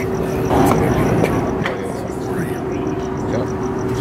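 Ballpark background between pitches: faint distant voices over a steady hum and a low, even rumble, with one small sharp knock about a second and a half in.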